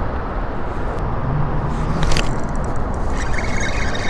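Steady low rumble of road traffic from the highway bridges overhead, with a single sharp click about halfway through and a faint light rattle near the end.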